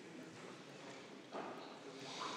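Faint room noise with low, distant murmuring voices, and a soft knock or shuffle about a second and a half in.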